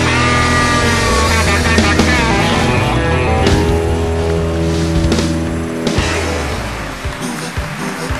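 Live rock band playing an instrumental passage: electric guitar lines over bass and drums, with sliding notes early on. The music winds down and fades about six to seven seconds in, leaving a scatter of sharp clicks near the end.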